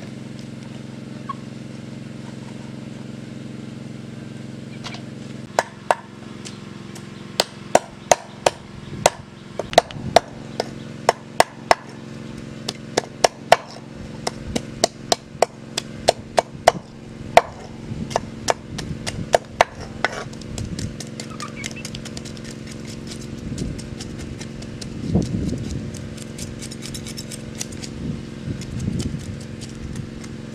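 Knife scraping the scales off a whole fish on a plastic-covered board: sharp clicking strokes about twice a second, giving way to softer, quicker scraping in the last third. A steady low hum runs underneath.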